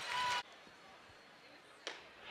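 Near silence from a gap between edited clips. A short stretch of faint background noise cuts off within the first half second, and a single faint click comes just before the end.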